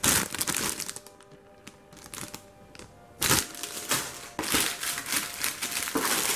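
Clear plastic bags around plastic model-kit sprues crinkling as they are handled: a short burst at the start, a quieter spell with a few light crackles, then steady crinkling from about three seconds in.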